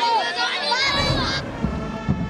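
A crowd of protesters shouting a chant, women's voices loudest, demanding water ("pani do, pani do", "give us water"). The shouting cuts off about a second and a half in, and music with deep, regular drum beats takes over.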